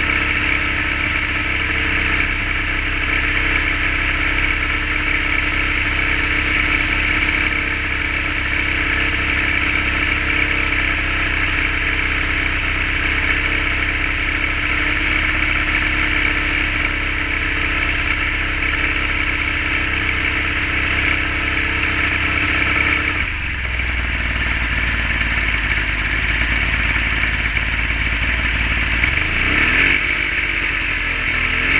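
Yamaha 50 hp two-stroke outboard running at a raised fast idle of about 1,900 rpm, held up by its hot-start system advancing the timing. About 23 seconds in the idle drops suddenly as the hot-start phase ends, and near the end the engine begins to rev up.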